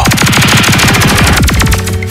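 Electronic sound-system jingle: a fast stuttering roll of rapid hits, which gives way near the end to a synth melody starting up.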